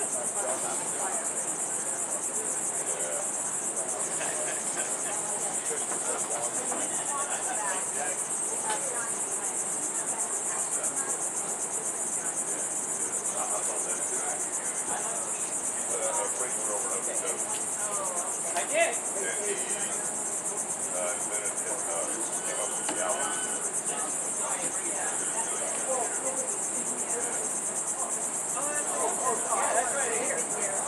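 Steady, high-pitched chorus of insects, unbroken throughout, with faint voices of people talking in the background.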